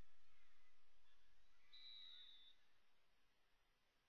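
Near silence, fading steadily lower, with one faint, brief high steady tone about two seconds in.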